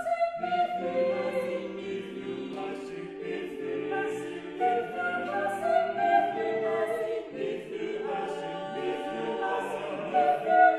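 Eight-voice mixed vocal ensemble (two sopranos, two altos, two tenors, two basses) singing a cappella in sustained, overlapping chords, with crisp s consonants from the English words now and then.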